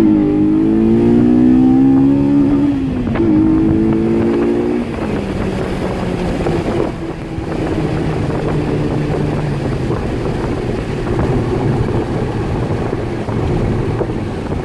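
Honda Integra DC5 Type R's 2.0-litre four-cylinder i-VTEC engine heard from inside the cabin under hard acceleration. The revs climb into the high-rev VTEC range, dip briefly at a gear change about three seconds in, and pull again. About five seconds in the engine eases off to a steady cruise under road and wind noise.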